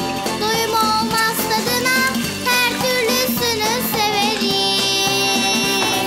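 Children's song: a child's voice singing a melody over light instrumental backing, with one long held note in the second half.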